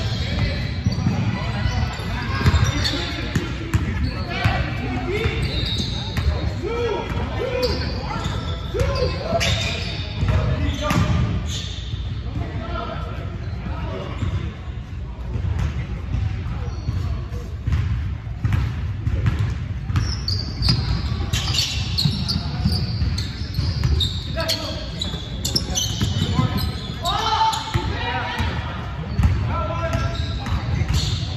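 Basketball game in a large gym hall: a basketball bouncing on the hardwood floor as it is dribbled, with repeated short knocks throughout, and players calling out to one another.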